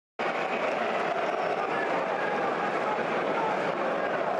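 Steady football-stadium crowd noise, an even din of many voices with no single voice standing out, starting just after a brief silent gap at the very beginning.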